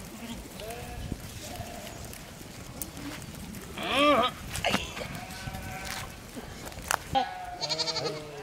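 Sheep bleating from the grazing flock: several calls, the loudest a single wavering bleat about four seconds in, with fainter ones before and another near the end. A couple of sharp snaps come between them.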